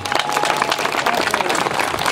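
Audience applauding steadily, with some laughter.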